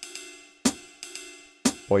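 Sampled ride cymbal from a metronome app playing a swung jazz ride pattern. Sharp strikes come about once a second, each ringing out and fading.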